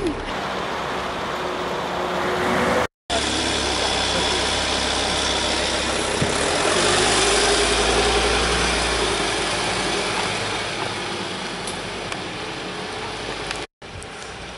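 Car engine and road noise from a white Volkswagen Touareg SUV moving off along a street. A low rumble swells in the middle and then eases off.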